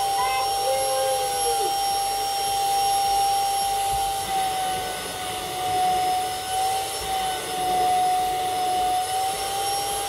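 Canister vacuum cleaner running steadily, its motor giving a strong high whine that wavers slightly in pitch over a rushing of air.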